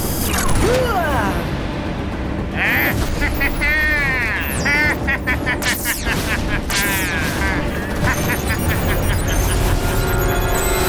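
Cartoon action soundtrack: background music under layered sound effects, with booms, a crackling magic lightning bolt and whooshes. Around the middle come several cries that swoop up and down in pitch, one after another, and near the end a glittering magical shimmer.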